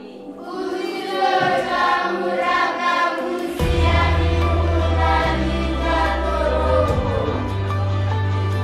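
Music with a choir singing, joined by a deep, steady bass line about three and a half seconds in.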